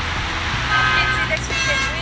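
Steady low hum and hiss of a car's cabin while a phone call pauses.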